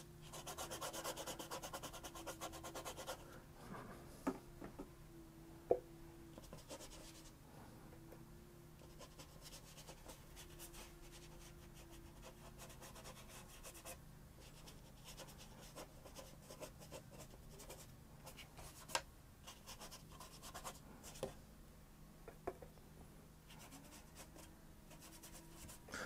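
Watercolour brush rubbing and stroking across the paper, a soft scratchy sound that is clearest in the first three seconds and then grows faint, with a few small knocks. A low steady hum runs underneath.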